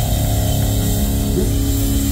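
Live rock band playing loud, with electric guitars and bass holding sustained notes over drums, and a short rising note about halfway through.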